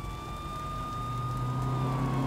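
An emergency vehicle siren wailing: one long tone that has just risen, holds steady, and begins to fall near the end. A steady low rumble comes in about halfway through.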